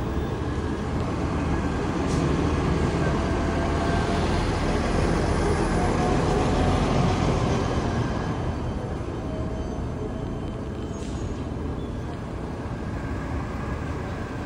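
Road traffic going by: a steady rush of vehicle noise that swells over the first half and eases off after about eight seconds.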